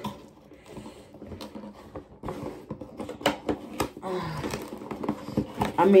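A printed cardboard product box being opened by hand: scattered clicks and taps of the flaps and packaging, with a couple of sharper snaps about three seconds in.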